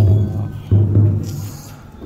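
Two deep, ringing drum strokes, the second a little under a second in.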